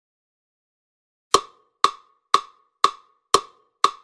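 A woodblock-like click struck six times at an even two per second, starting about a second and a half in, as a count-in before the dance music starts.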